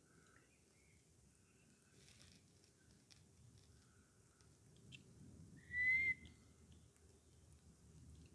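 Faint birdsong: short, scattered whistled notes, with one louder, clear whistled note about six seconds in.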